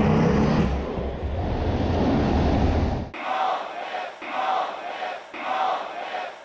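Fighter jet engine noise heard from inside the cockpit during a carrier catapult launch, a loud steady rumble for about three seconds. It cuts off suddenly to a large crowd chanting in rhythm, three chants about a second apart.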